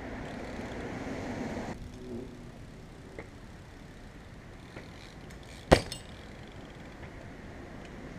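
BMX bike tyres rolling on concrete close by, a noise that stops suddenly after about a second and a half. A few faint ticks follow, then a single sharp clack a little past halfway, the bike landing a bunny hop on the concrete.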